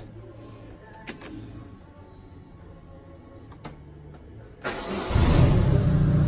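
Peugeot 206 engine cranked and catching near the end, then running steadily at idle, heard from inside the car's cabin. A couple of faint clicks come before it.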